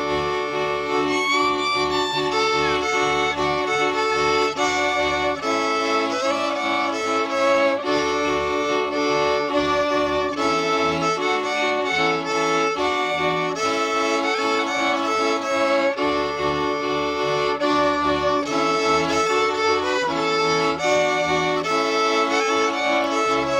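Background instrumental music: a melody over steady chords and a bass line that change about once a second.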